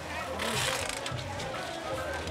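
Busy street-market ambience: music playing in the background under the voices of people nearby, with a short noisy rustle about half a second in.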